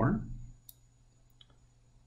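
Two faint, short computer mouse clicks, the first under a second in and the second about half a second later, against a near-quiet room. They come from the mouse button being worked while a video trim handle is dragged on screen.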